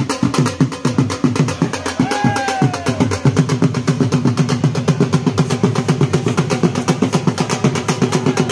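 Dhol drums beaten in a fast, steady rhythm, several strokes a second. A brief falling tone cuts across the drumming about two seconds in.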